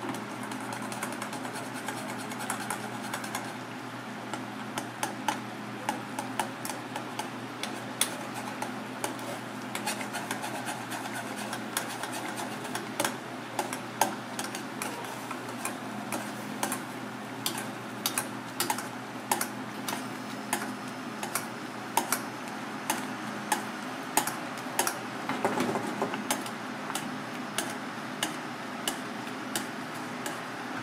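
Fish simmering in a bubbling sauce in an aluminium saucepan on a gas burner, with the metal spoon clinking against the pan again and again as the sauce is spooned over the fish.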